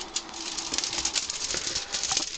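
Popcorn packing and a small cardboard box rustling and crackling as an unbroken egg is lifted out and handled, a dense run of small, quick crackles.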